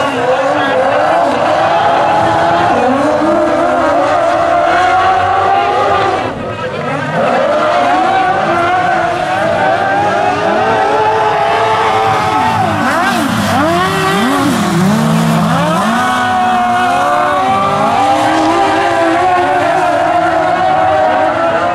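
Several speedway sidecar outfits racing, their motorcycle engines revving hard up and down as they power around the track. The sound dips briefly about six seconds in.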